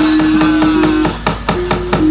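Rapid sharp wooden knocking, about six knocks a second, typical of the dalang's cempala mallet striking the puppet chest, with a sustained musical note held underneath that steps up once partway through.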